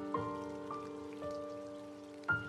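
Slow piano music: single notes struck about every half second, each ringing on and fading.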